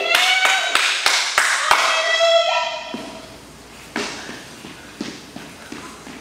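Sharp taps about three a second under a man's voice vocalizing on held and sliding notes; after about two and a half seconds both stop, leaving a few scattered soft thumps.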